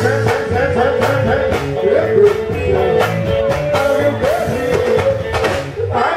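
Live band music: a singer's melodic line over drums and electric guitar, played loud and steady through a sound system.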